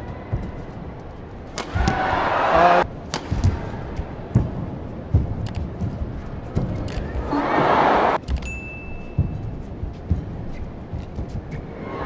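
Badminton rallies: shuttlecocks struck by rackets with sharp cracks, among shoe squeaks and footfalls on the court. Two swells of crowd cheering rise as points end, about two seconds in and again around seven to eight seconds.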